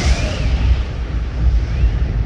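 Cinematic intro sound effect: a loud, deep, steady rumble with a hiss above it.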